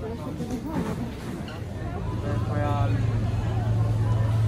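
Background chatter of an airport terminal crowd, with a steady low hum that comes in and grows louder about two seconds in.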